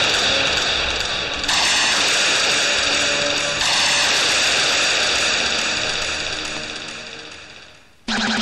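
Film background score: a sustained, hissing synthesizer chord that steps up in loudness twice early on. It then fades out steadily toward the end.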